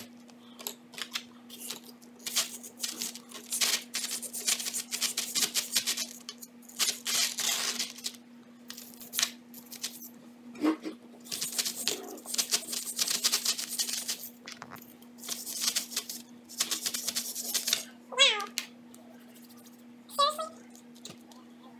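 A plastic chisel scraping and picking at a hardened sand block from a dig-it excavation kit, in quick runs of scratchy strokes and clicks over a plastic tray. Near the end a pet gives one short, high, wavering whine. A faint steady hum runs underneath.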